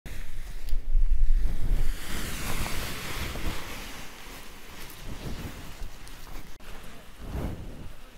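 Wind buffeting the microphone in gusts, with a heavy low rumble in the first two seconds that settles into a steadier, quieter rush.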